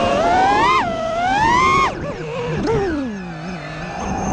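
FPV freestyle quadcopter's electric motors whining, pitch swinging up and down with the throttle: high and rising for about two seconds, then dropping sharply and sliding down to a low hum as the throttle comes off.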